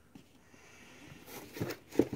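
Faint handling noise of a phone in its case being turned over in the hands. Rustling builds in the second half, with a few small scrapes and a sharp click at the very end.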